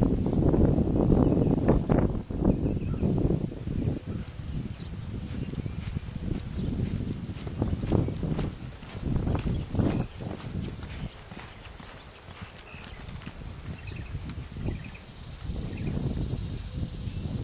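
A reining horse's hoofbeats on the ground: dense and loud for the first few seconds, then lighter and more irregular footfalls.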